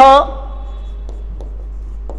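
Chalk writing on a green chalkboard: a few faint taps and scratches over a steady low hum.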